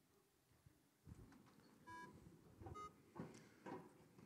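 Near silence with faint shuffling and rustling of people standing up, and two short faint beeping tones, about two seconds in and again just before three seconds.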